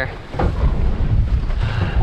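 Strong wind buffeting the microphone over waves washing against a boat's hull in rough, choppy seas, with one brief slap of water about half a second in.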